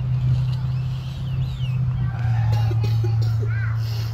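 A steady low hum, with a few short, chirping bird calls over it, mostly in the second half.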